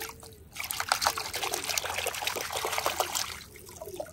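Water splashing and sloshing in a plastic bucket as a hand swishes a plastic toy rifle back and forth under the water to wash off mud, with a short lull about half a second in and another near the end.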